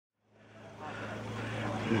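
A steady low hum under a haze of background noise, fading in from silence over the first second; a voice begins right at the end.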